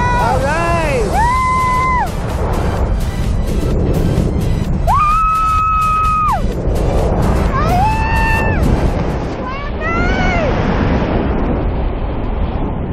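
A woman screaming and whooping with delight in about five long high calls, some held level, some swooping up and down, over steady wind rush on the camera microphone.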